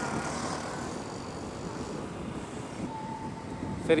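Steady road and wind noise from an electric scooter picking up speed, with no engine sound. A thin steady tone sounds for about a second near the end.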